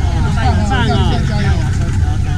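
People talking, several voices overlapping, with a steady low rumble underneath.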